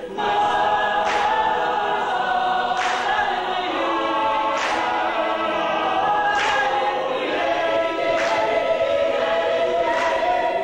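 A cappella choir singing sustained multi-part harmony, with no instruments. A soft hissy accent comes through about every two seconds.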